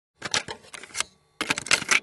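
Rapid clattering clicks like typewriter keys, in three bursts of about half a second to a second each.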